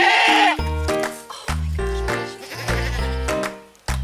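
A goat bleats loudly for about half a second at the start. Background music with repeating notes over a steady bass line follows.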